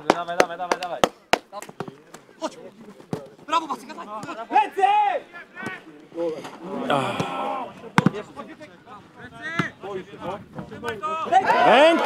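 Players' voices shouting and calling across a grass football pitch, loudest near the end. Several sharp knocks of the ball being kicked sound through it, a cluster in the first second or so and a loud one about eight seconds in.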